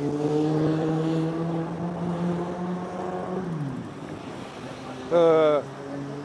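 Passing motor vehicle engine at a city intersection, a steady hum that drops in pitch and fades about three and a half seconds in, over general street traffic noise.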